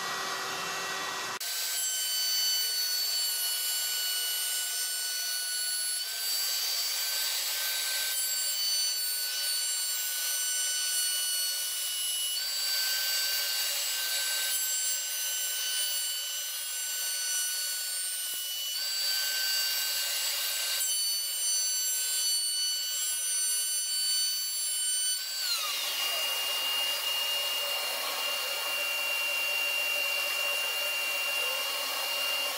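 CNC router spindle, a router motor spinning a 1/2" straight carbide bit at about 20,000 rpm, with a steady high whine while it cuts an arch into a wooden rail. Louder stretches of cutting noise come every several seconds as the bit makes its successive passes through the wood. About 25 seconds in, the motor winds down with a falling pitch, and a steady drone remains.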